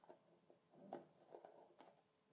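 Faint handling of a plastic shaving-soap tub: fingers rubbing and tapping on the lid, with a few soft knocks, the loudest about a second in.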